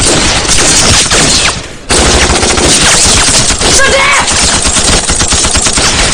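Sustained rapid automatic gunfire from an action-film soundtrack, firing in dense volleys. The firing drops out for a moment about one and a half seconds in, then resumes.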